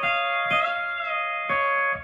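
E9 pedal steel guitar holding a sustained, ringing chord. One of its notes bends up and settles back, as a pedal or knee lever is worked. The strings are picked again about half a second in and once more near the end.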